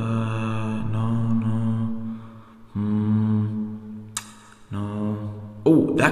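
A man humming a low, flat-pitched 'hmm' while he thinks, held for about two seconds, then twice more with short breaks. There is a short click a little after four seconds in.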